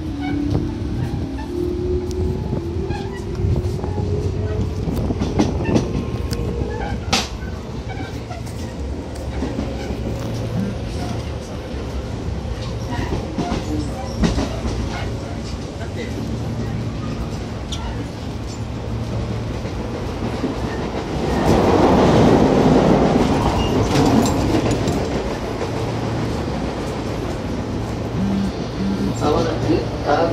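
Tobu 10000 series electric train running, with a steady low rumble and scattered clicks of wheels over rail joints. A traction-motor whine rises in pitch over the first several seconds as the train picks up speed. A louder rushing noise swells from about 21 to 24 seconds in.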